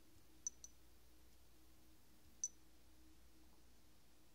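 Three short, sharp clicks from taps on two smartphones' touchscreens, two in quick succession about half a second in and one about two and a half seconds in, against near silence.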